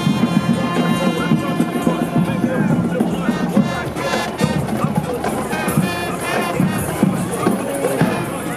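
Marching band brass playing held notes, then shorter phrases, over the voices of a crowd along the street.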